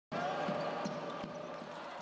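Basketball bouncing on a wooden court, a few dull thuds, over the steady background of an arena crowd's voices.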